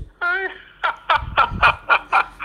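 A person laughing: a short wavering vocal note, then a run of quick bursts of about five a second.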